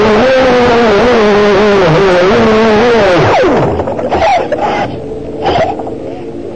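Aquacraft brushless electric motor of an RC model boat whining at speed, heard from onboard. A little over three seconds in the throttle comes off and the pitch falls away quickly, then the whine comes back only in short, quieter blips.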